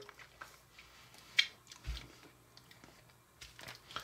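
Faint mouth and handling sounds of tasting a hard candy stick dipped in flavoured sugar powder: small clicks, a sharper click about a second and a half in, and a soft low thump near two seconds.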